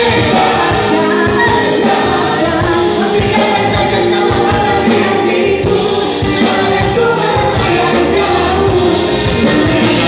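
Several singers singing together into microphones over a live band, loud and steady throughout, with a regular drum beat.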